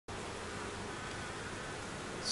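Steady buzzing hum of a honeybee colony in an opened hive.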